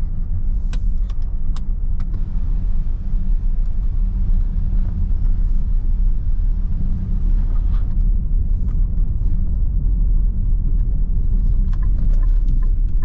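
Tyres running over cobblestones, heard inside the cabin of a 2023 Nissan X-Trail e-Power as a steady, heavy low rumble. A few sharp knocks or rattles come through in the first two seconds and again around eight seconds in.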